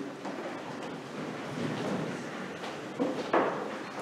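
Pews and clothing rustling, with a sharper wooden knock about three seconds in, as a congregation sits down in a church.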